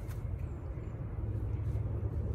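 A steady low rumble outdoors, with a faint tick about a second in.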